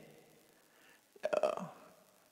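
A short non-speech vocal sound from the monk at the microphone, lasting about half a second a little past the middle of an otherwise near-silent pause.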